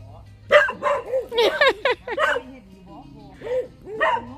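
A dog barking: a quick run of about six high barks over two seconds, then one more bark near the end.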